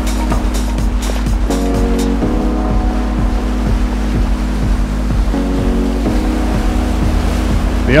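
Background music with a steady beat and sustained chords that change every second or two.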